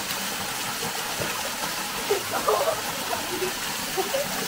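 Small waterfall pouring into a rock pool: a steady rush of falling water splashing onto the pool's surface.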